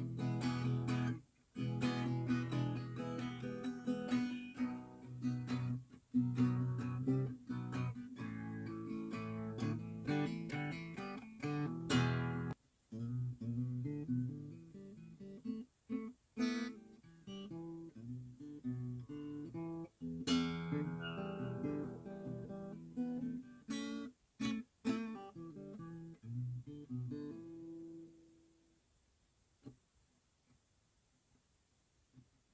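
Acoustic guitar being played, chords strummed and picked, broken by a few brief sudden gaps, with the last notes ringing out and dying away near the end.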